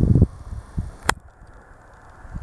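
Handling noise from a hand-held camera being panned and zoomed: low, irregular bumps and rumble, with one sharp click about a second in.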